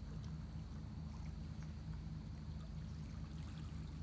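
Calm lake water lapping gently at a sandy shore, under a steady low hum.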